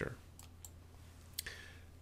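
A few faint computer mouse clicks, the sharpest about a second and a half in, over a steady low electrical hum.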